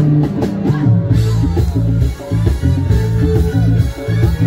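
A live band playing loudly, with drum kit, guitar and a heavy low end carrying a rock-style groove.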